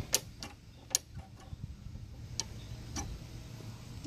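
A few scattered sharp clicks from the handle controls and cable of a push mower being worked by hand, the loudest about a second in, over a faint low steady hum. The engine is not running: the owner is checking whether the shutoff linkage, which has been faulty, still works.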